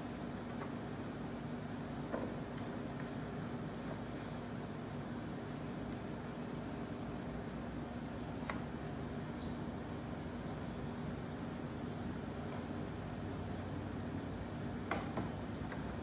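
A few light wooden clicks and taps as a plywood rail piece is test-fitted against plywood frames, over a steady low machine hum.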